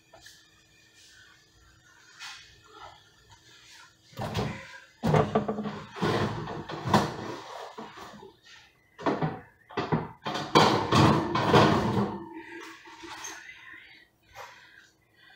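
Kitchen handling noises: a run of knocks, thunks and rustling from a cupboard door and things being moved on the counter, starting about four seconds in and loudest near the end, over a faint steady hum.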